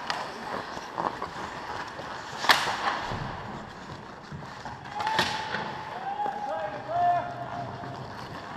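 Ice hockey skates scraping on the ice close by, with two sharp cracks, the louder about two and a half seconds in and another about five seconds in. Voices call out over the rink toward the end.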